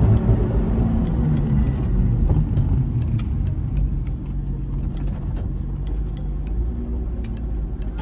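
Lotus Exige's engine and road noise heard from inside the cabin at low speed, a steady low drone that drifts a little in pitch, with scattered light clicks and rattles.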